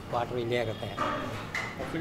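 A man's voice speaking in an interview, with no clear sound other than speech.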